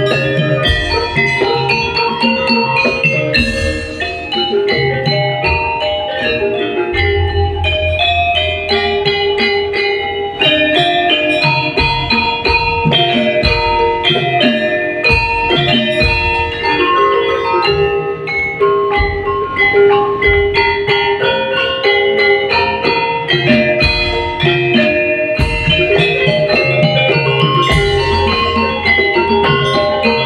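Live Javanese gamelan playing: bronze metallophones and gong-chimes ringing out a busy, steady melody over repeated low drum strokes.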